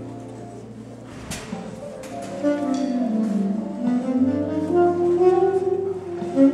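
A live band plays drums, guitar and keyboard under a held melodic line, opening a recital. A cymbal crash comes about a second in, and the band gets louder from about two and a half seconds in.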